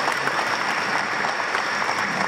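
Audience applauding steadily throughout.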